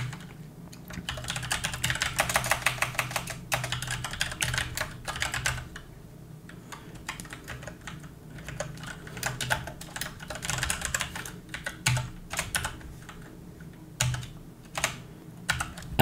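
Typing on a computer keyboard: quick runs of keystrokes with short pauses between them, then a few single key presses near the end.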